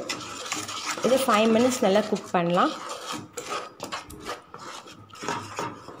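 A wooden spatula stirring and scraping thick mango pulp and sugar around a pan, in repeated rubbing, scraping strokes.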